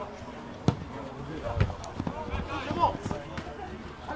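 Football being kicked on a grass pitch: one sharp thud under a second in, then a few lighter knocks, with players' voices calling across the field.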